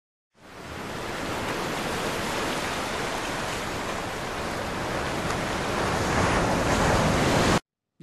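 A steady rushing noise, like surf or static, spread evenly from low to high pitch. It fades in just after the start, swells slightly toward the end and cuts off abruptly.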